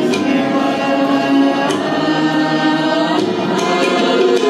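A group of men singing a patriotic group song together in long held notes, accompanied by harmonium. Tabla strokes sound at the start and come back near the end.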